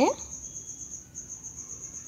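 A cricket trilling steadily: one high note in rapid, even pulses.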